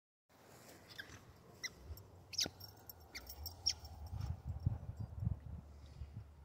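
A rubber squeaky ball squeaking in short, high-pitched squeaks, five or six times in the first four seconds, as a dog chews it, over a low rumble.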